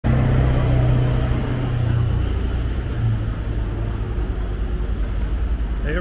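A large tour vehicle's engine running close by, a low steady hum that is loudest for the first two seconds and then fades into general city traffic noise.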